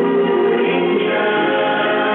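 A group of voices singing together, holding long notes, with a change of notes about a second in.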